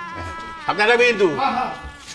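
A person's drawn-out, wavering vocal sound starting a little under a second in and lasting about a second, over faint steady background music.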